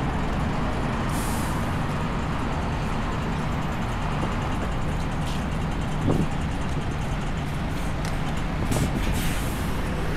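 City street traffic at an intersection, led by a large box truck's engine idling close by as a steady low rumble. Short hisses come about a second in and again near the end, and there is a single brief knock a little past the middle.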